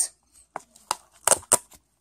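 Small clear plastic bags of loose glitter being handled: about half a dozen short, sharp crackles, most of them in the second half.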